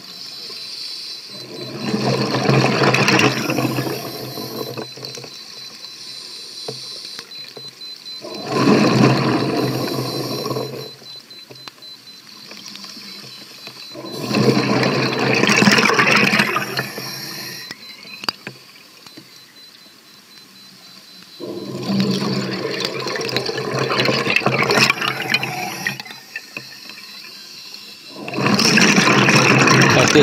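A diver breathing underwater on scuba, heard from the diver's camera: a loud rush of exhaled bubbles about every six to seven seconds, with quieter hiss between the breaths.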